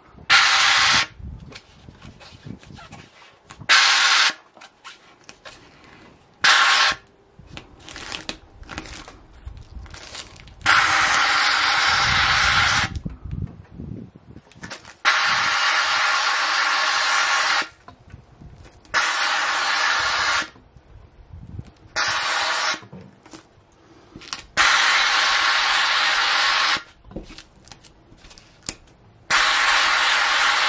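McCulloch handheld steam cleaner hissing out steam in repeated bursts, some short blasts and some longer hisses of two to three seconds, as it heats an old vinyl decal to loosen its adhesive. Between the bursts come quieter crinkling and rustling sounds of the vinyl being peeled off.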